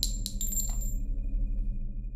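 Intro logo sound effect: a few sharp clinks in the first second, each leaving a high ringing tone that fades out, over a steady low rumble.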